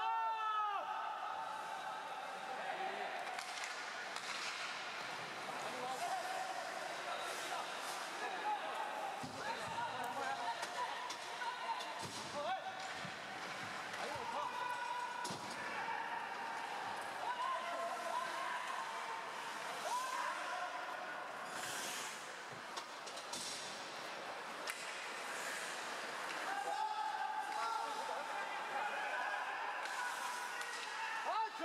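Ice hockey game sound: a crowd of voices chattering and calling out, with occasional sharp knocks of sticks and puck, more of them after about 20 seconds in.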